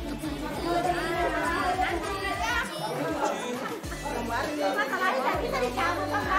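Several people chatting at once in a room, over background music.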